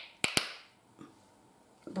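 Plastic flip-top cap of an Alkemilla K-hair volumizing shampoo bottle being snapped open and shut: two sharp clicks near the start and a faint one about a second in. The cap is already broken.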